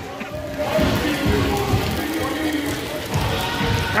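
Steady hiss of heavy rain mixed with indistinct voices and faint music.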